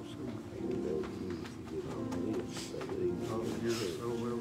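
Low, murmured voices talking quietly over soft music with long held notes.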